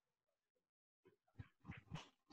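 Near silence over an online call, with a few faint, short sounds in the second half.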